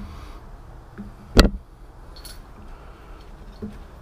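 One sharp click of hard computer parts being handled, about a second and a half in, followed by a couple of faint ticks over a low steady hum.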